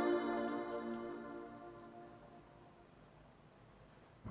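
A sustained electronic keyboard chord from the track playing back, ringing out and fading away to near silence over the first two to three seconds.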